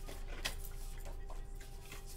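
A deck of tarot cards being handled and shuffled in the hands: a few soft clicks and rustles, the sharpest about half a second in.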